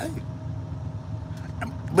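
Steady low rumble of an idling truck engine heard from inside the cab, with a faint steady hum above it.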